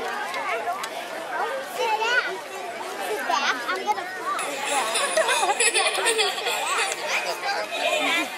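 Chatter of a crowd of children, many high voices talking over one another at once.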